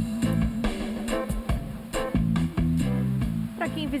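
Background music led by guitar with a bass line, notes changing in steady blocks every half second or so.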